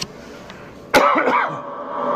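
A person coughs once, sharply, about a second in, with a short vocal sound trailing after it.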